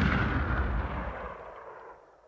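A booming, crashing sound effect, noisy from deep to high, dying away steadily over about two seconds into silence.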